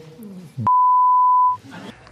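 A censor bleep: one steady, single-pitched tone, a little under a second long, starting about two-thirds of a second in and masking a swear word in a man's speech.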